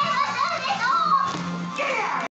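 Children's voices in the background of a home, with music playing.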